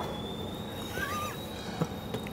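A short, high, wavering animal call about a second in, over a faint steady high whine, with a small click near the end.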